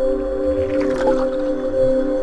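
Logo intro music: a sustained synth chord held steady, with a brief swishing sound effect about halfway through.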